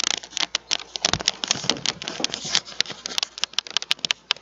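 Rapid, irregular clicking and crackling handling noise as the webcam is picked up and carried.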